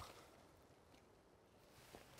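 Near silence: faint outdoor background.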